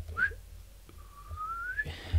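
A person whistling softly: a brief upward note near the start, then about a second in a longer single note that rises steadily in pitch.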